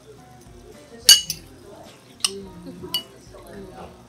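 Metal slotted ladle clinking against a ceramic bowl and a stainless-steel hot pot while food is scooped into the broth. The loudest, ringing clink comes about a second in, with a few lighter clinks after it.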